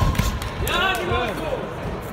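A couple of sharp thuds from kickboxing blows or footwork in the ring right at the start, then loud shouting from ringside for about a second.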